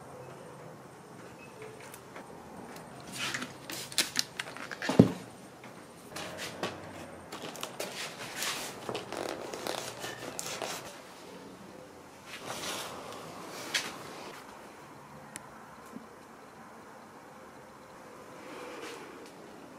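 Hands working on a foam RC airplane on a workbench: scattered rustles and clicks as glue is squeezed from a plastic bottle onto the wing and the fuselage is pressed down onto it over a plastic sheet, with a sharp knock about five seconds in.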